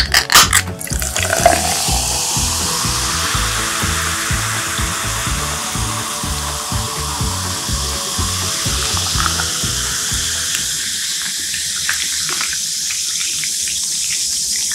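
A can of 7UP Free clicked open, then the soda poured into a glass jar, fizzing and hissing steadily. Background music with a steady beat runs under it and stops about ten seconds in.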